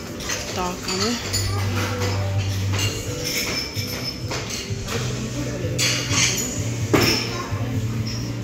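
Café counter ambience: background voices and the clinking of dishes and cutlery, over a low steady hum.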